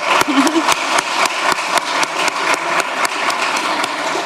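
Audience applauding: dense, steady clapping from many people in a large hall.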